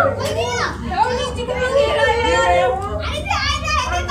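Several children shouting and calling out excitedly, their voices overlapping, over a low steady hum.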